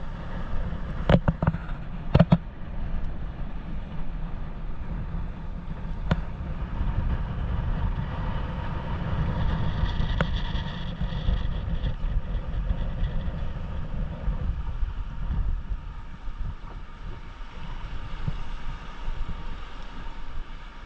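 Wind buffeting the microphone over water washing around a moored boat, with a few sharp knocks about one and two seconds in and again around six seconds.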